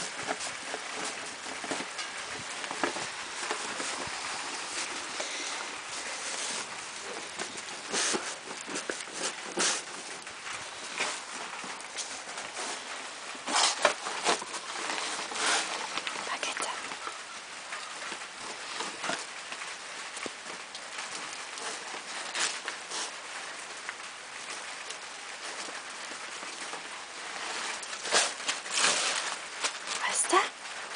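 Paper crackling and tearing as a Newfoundland dog rips open a wrapped present with paws and teeth: brown parcel paper, then wrapping paper. It comes in irregular bursts, with a few louder rips spread through.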